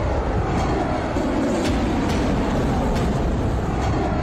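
Rocket liftoff: the engines' exhaust makes a steady, dense rumble, heaviest at the low end, with a few faint sharp crackles.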